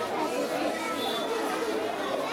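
Many people talking at once: indistinct crowd chatter with overlapping voices.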